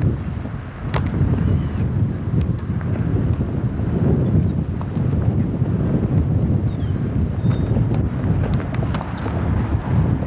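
Wind buffeting the camcorder microphone in a steady low rumble, with a few sharp thumps of a soccer ball being kicked: one about a second in and a couple near the end.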